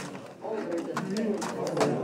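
Several voices talking over one another: students chatting in pairs in a classroom, with no single clear speaker.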